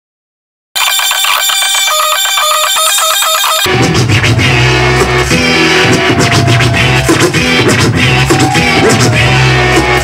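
DJ mix from turntables: after a moment of silence, music starts thin with no bass, and a full beat with heavy bass drops in about four seconds in.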